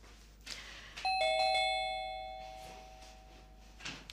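Two-tone doorbell chime ringing about a second in, a high note then a lower one, both fading away over the next couple of seconds as visitors arrive at the door.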